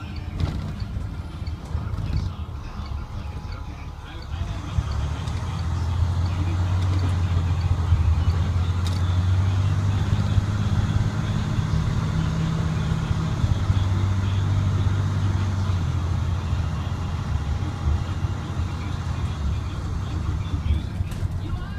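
School bus diesel engine, the Navistar DT466E inline-six, running as the bus drives along with a low steady drone. It is softer for the first few seconds, grows louder about five seconds in and holds there.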